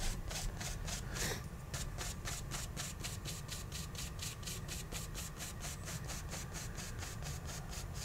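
Filbert paintbrush scrubbing oil paint into canvas with quick, even back-and-forth strokes, about five a second.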